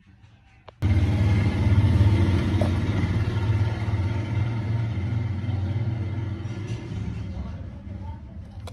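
A loud, low engine rumble that starts suddenly about a second in and slowly fades.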